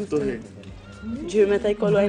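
Pitched, sliding voices with music, broken by a short lull about half a second in, then a voice rising and falling in pitch like singing or a sung phrase.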